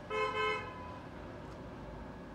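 A single short horn toot of about half a second at a steady pitch, starting right at the beginning.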